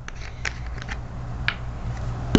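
A few faint, sharp clicks and taps of small objects being handled on a tabletop, over a low steady hum.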